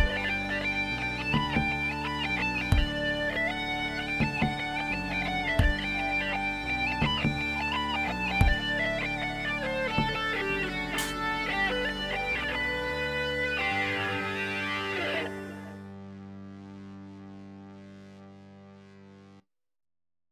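Distorted plucked-string melody of a traditional Irish tune over a steady low drone, ending about 14 seconds in on a held drone chord that fades and then cuts off suddenly shortly before the end.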